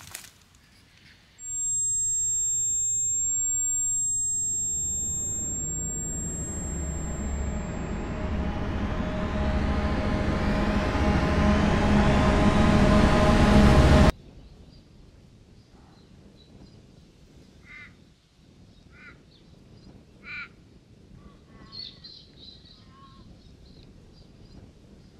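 Film sound design: a steady high ringing tone, then a rising swell that builds louder for about ten seconds and cuts off suddenly. After the cut, quiet outdoor ambience with a few short bird calls.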